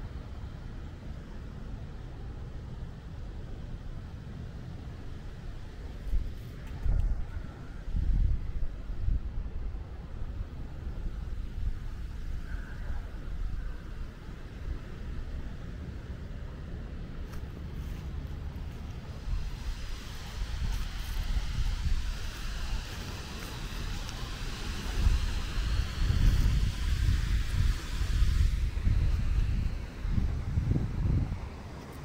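Outdoor park ambience: a steady low rumble with irregular louder swells, and a hiss that builds over the second half.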